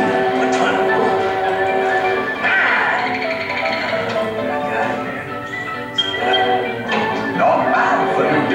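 Music with voices from a projected home movie's soundtrack, heard through the room: held chords with voices over them, and a single sharp click about six seconds in.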